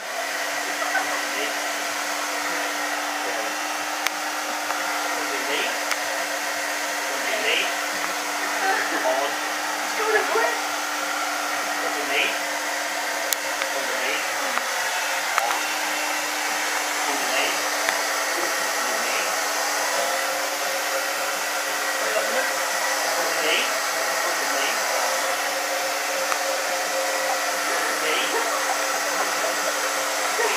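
Handheld hair dryer that comes on at the very start and then runs steadily during a blow-dry. Its airflow makes a steady rush with a constant motor hum underneath.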